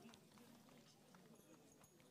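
Near silence: faint background ambience with a few soft ticks.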